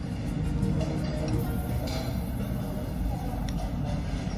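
Soft background music with a few faint held notes, over a steady low rumble of room noise.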